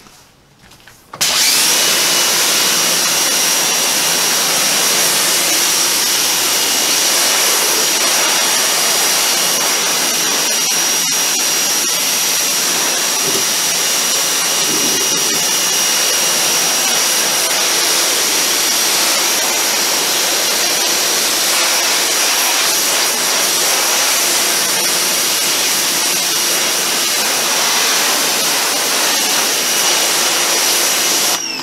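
An 1800-watt electric pressure washer kicks on about a second in and runs steadily, its motor and pump giving a high whine under the hiss of a 40-degree fan spray striking vinyl siding.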